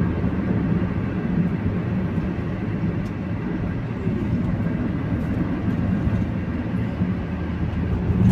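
Steady engine and tyre noise heard from inside the cabin of a Fiat Fiorino van cruising along a highway, a low, even rumble.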